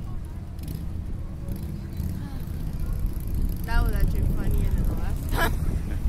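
Wind buffeting the onboard camera microphone of a Slingshot ride capsule as it swings in the air: a steady low rumble. Riders laugh over it, a falling laugh about four seconds in and a short sharp one near the end.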